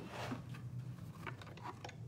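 Faint handling noise: plastic embossing-machine plates being picked up and shuffled, giving a soft rustle near the start and a few light clicks.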